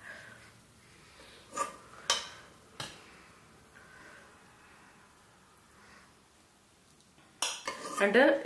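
Steel spoon clinking against a pressure cooker and plate while serving, three sharp clinks in quick succession, then a short, louder scrape near the end.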